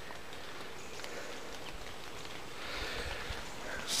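Quiet, steady outdoor background noise with no distinct event, a little louder about three seconds in.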